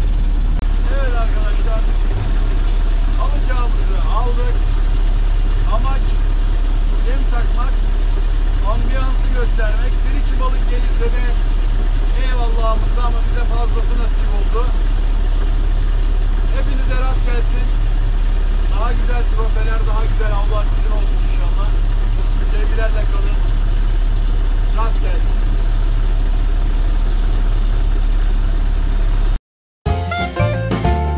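Small wooden fishing boat's inboard engine idling with a steady low hum, with scattered short gliding calls over it; the sound cuts off suddenly just before the end.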